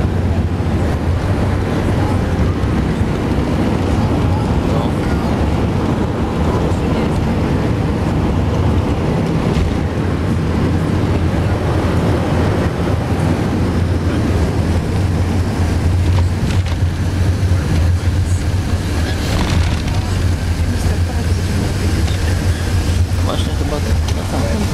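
Steady low rumble of an Airbus A380 cabin as the aircraft taxis after landing, engine and airflow noise heard from inside at a window seat.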